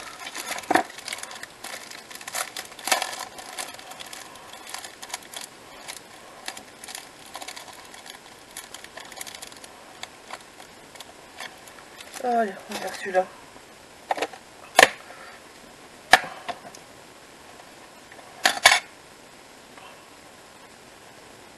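Craft supplies being handled on a work mat: light crinkly rustling and small taps from a plastic clear-stamp packet, then a few sharp plastic clicks in the second half, with a quick double click near the end as an ink pad's plastic case is opened.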